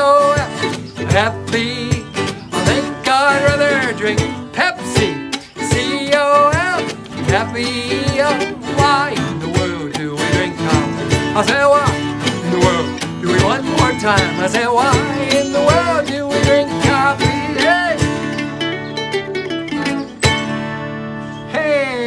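Ukulele and acoustic guitar strummed together under a man's singing voice. Near the end the song closes on a held chord that rings and fades.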